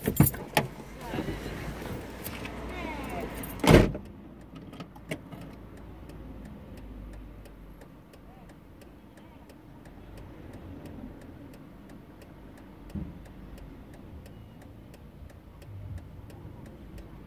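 Steady low rumble of street traffic and a car engine, heard from inside a stopped car, with a faint even ticking. The first few seconds hold louder handling sounds and a voice, ending in a loud knock just before the four-second mark.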